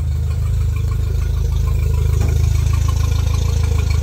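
Mercury outboard motor idling steadily in neutral.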